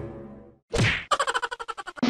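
Edited-in music and sound effects: a rising musical swell that cuts off about half a second in, a quick whoosh, then a fast run of sharp knocks, about ten a second.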